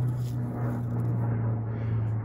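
A steady low hum.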